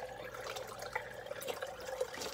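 Water trickling and dripping as it drains down through the clay-pebble grow bed of a small hydroponic fish tank, over a steady low hum from the tank's pump.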